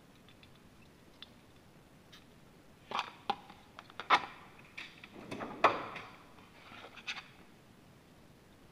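A motorcycle carburetor body and a small metal pick being handled over a drain pan while the mixture-screw o-ring is fished out: a string of light knocks, clicks and scrapes starting about three seconds in, with the sharpest knocks about four and five and a half seconds in.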